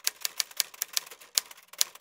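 Typewriter key-clicking sound effect: a quick run of sharp clicks, about five a second, with silence between them. It goes with a caption being typed out on screen.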